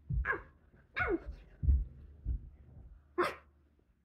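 Three short yelps, each falling steeply in pitch, mixed with dull thumps on a carpeted floor. The loudest thump comes just before the middle.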